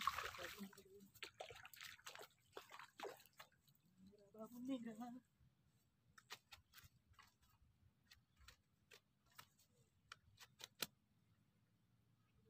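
Faint splashing of a hooked tilapia being lifted out of a shallow irrigation ditch, a brief murmur of voice about four seconds in, then a scatter of light, sharp clicks and taps from handling the catch on the bank, the loudest one near the end.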